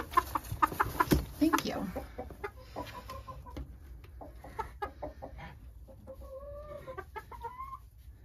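Domestic hens clucking in a straw-bedded coop, with a few drawn-out calls near the end. There is a burst of sharp knocks and short calls in the first two seconds.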